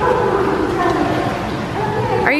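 A wordless, drawn-out voice, a child's by the look of the scene, over the wash of pool water.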